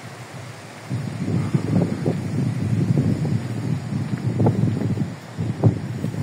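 Wind buffeting the microphone in irregular gusts, starting about a second in, with a brief lull near the end.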